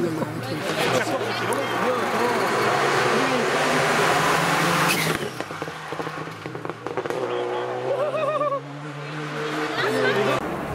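Rally car at full throttle coming through a bend and past at speed, its engine and tyre noise growing louder, then cut off abruptly about five seconds in. Quieter after that, with spectators' voices near the end.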